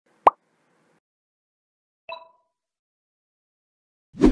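Animated-intro sound effects: a sharp cartoon pop about a quarter second in, then a brief ringing blip about two seconds in.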